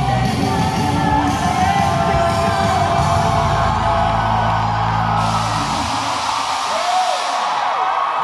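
Amplified live song sung by a group of singers on microphones, with a steady bass line that stops about six seconds in as the song ends. The audience cheers and screams over the ending.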